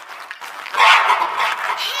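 A short, loud cartoon animal call, bark-like, about a second in.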